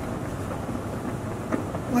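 Steady background noise with a low rumble and no distinct events.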